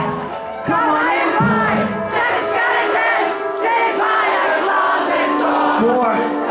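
Concert audience singing the song loudly together, many voices at once, with the band's music under them.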